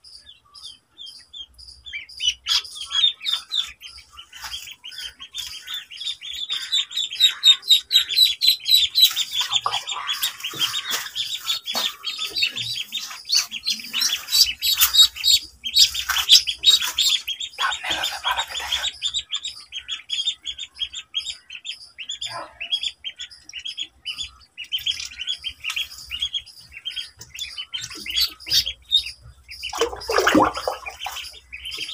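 Ducklings peeping in a dense stream of short, high chirps, starting about two seconds in.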